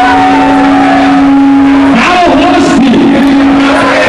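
Live band music with a long, loud held note that breaks off briefly about two seconds in, then sounds again.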